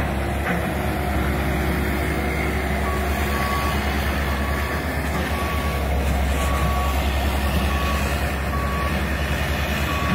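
Diesel excavator engines running steadily, with a backup/travel alarm beeping at one pitch roughly once a second from about three seconds in as a machine moves.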